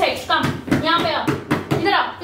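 Speech: a voice talking throughout, with no other sound standing out.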